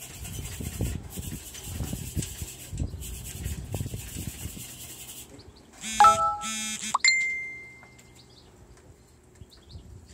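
Irregular knocks, bumps and scraping of a couch being shifted and turned over on a garage roof. About six seconds in come two short, loud pitched calls, followed by a single clear ringing tone that fades over about a second and a half.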